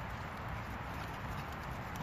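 Faint footsteps on wet grass with light, irregular taps over a low, steady outdoor background noise.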